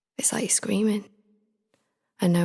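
A woman's soft, breathy spoken voice saying one short phrase.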